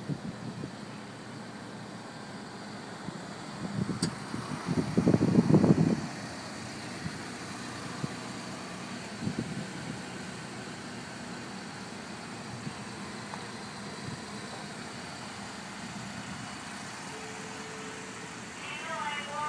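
A steady low vehicle hum, with a louder rustling noise lasting about a second and a half about five seconds in, and a few brief clicks.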